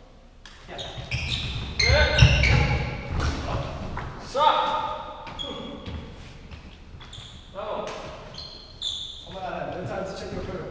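Players' voices echoing in a large hall, with low thuds of footsteps on a wooden badminton court, heaviest about two seconds in.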